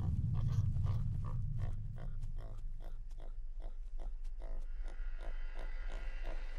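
Warthogs grunting: a steady run of short grunts, about three a second. Under them a low rumble fades away over the first two seconds.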